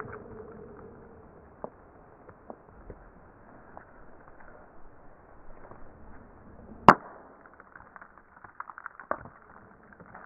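A small hard object thrown onto a rock: one sharp crack about seven seconds in, followed by a few light clicks.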